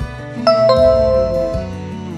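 Two-note electronic chime, a higher note followed about a quarter second later by a lower one, both ringing on for about a second: the quiz's correct-answer reveal sound, over steady background music.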